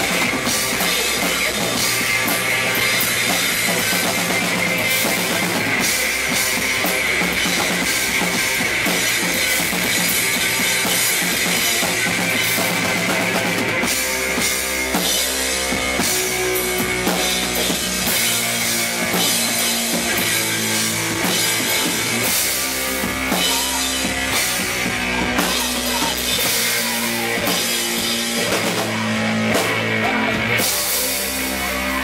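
Live rock band playing an instrumental passage on electric guitar, bass guitar and drum kit. The playing changes about halfway through.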